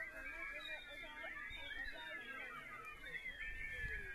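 A group choir's voices making many overlapping high sliding calls at once, in an improvised, animal-like vocal chorus.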